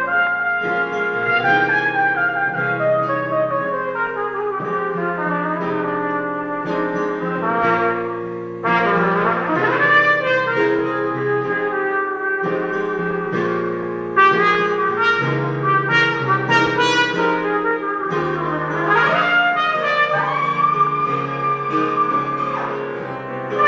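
Trumpet playing a melody over piano accompaniment, with two rising slides in pitch, about ten seconds in and again near the end.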